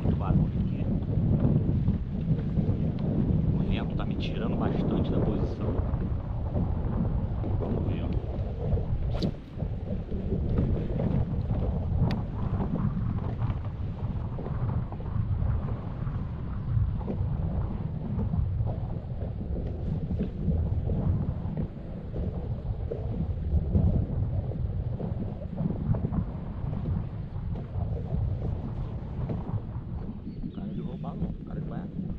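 Wind buffeting the microphone: a steady, gusting low rumble that rises and falls throughout.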